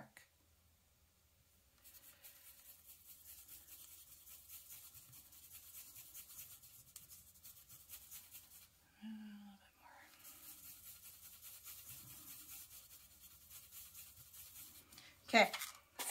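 Small paintbrush mixing white and black paint on a paper plate: a faint, quick, steady scratchy brushing of the bristles against the plate.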